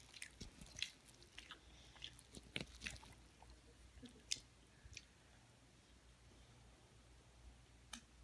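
Faint chewing with scattered small clicks, mostly in the first half.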